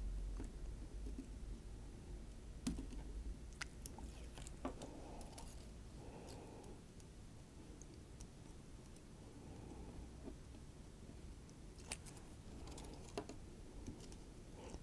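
Faint handling noises: a few sharp little clicks and soft rustles as fingers work a flex ribbon cable and a small circuit board, sticking it down with double-sided VHB tape.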